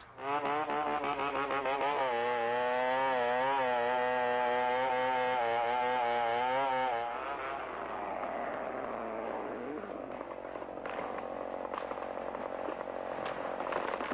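Chainsaw running at high revs as it cuts into a tree trunk, its pitch wavering under load, until it stops about seven seconds in. Then a rushing crackle with sharp cracks of wood and branches as the felled tree comes down.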